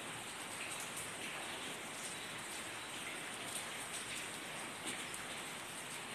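Steady, faint, even hiss of background noise with no distinct events.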